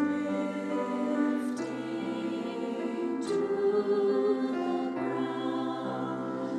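Women's choir singing slow sustained chords with piano accompaniment, the harmony shifting about every second and a half.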